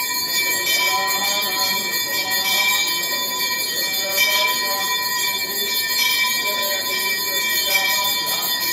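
Temple bells ringing continuously and rapidly during an arati, the sign that the lamp offering is being performed, with fainter voices wavering underneath.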